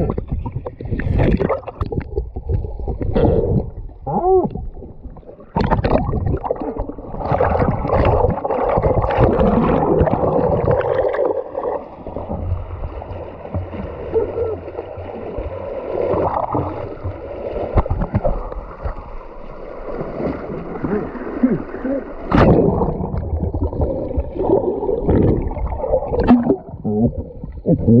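Water sloshing, gurgling and splashing around a camera as it drifts in a strong creek current, dipping in and out of the water. Irregular knocks and rushes come and go throughout.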